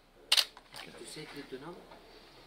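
A single sharp camera shutter click as a photo is taken, followed by faint voices.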